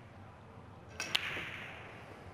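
9-ball break shot on a pool table. About a second in, the cue tip strikes the cue ball with a sharp click, and a louder crack follows as the cue ball smashes into the rack. A fading clatter of balls scattering across the table comes after.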